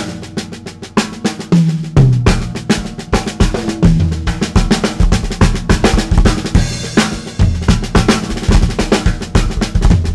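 Drum kit solo: fast snare strokes and rolls on a 1970s Gretsch Jasper shell snare drum converted to ten lugs with a George Way throw-off, mixed with bass drum and tom fills that step down in pitch.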